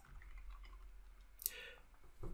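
A single faint click about one and a half seconds in, against quiet room tone.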